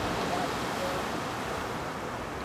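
Steady wind blowing across the microphone, with surf washing in the background.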